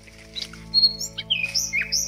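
Birds chirping over a steady low background-music drone. About a second in, the birds start a quick series of downward-sliding chirps, roughly three a second.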